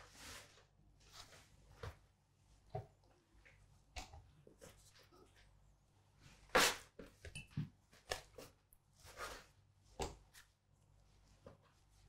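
Scattered soft taps and scrapes of a plastic dough scraper cutting bread dough on a wooden worktop, and pieces of dough being set down and pressed onto a digital kitchen scale; the loudest tap comes just past halfway.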